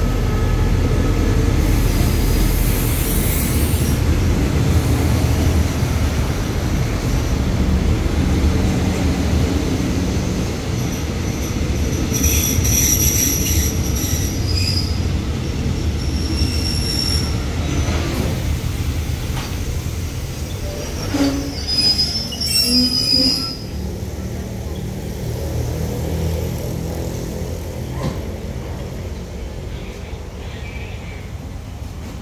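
Passenger coaches of a train rolling slowly past along the platform as it brakes to a stop, with a steady low rumble. Several high-pitched squeals from the braking wheels come around the middle and again later. The sound eases off toward the end as the train slows.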